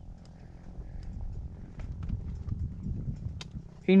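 A dirt bike engine running steadily under a low rumble, with a few faint clicks. A man's voice cuts in right at the end.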